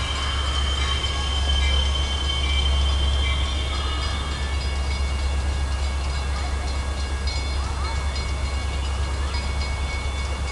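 Metra MP36PH-3S diesel locomotive approaching from a distance, heard as a steady low rumble, with a few thin, steady high tones above it.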